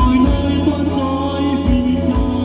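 A male vocalist sings a Christian worship song into a microphone, backed by a live band of electric guitar, keyboard and drums, with occasional drum strokes under the sustained chords.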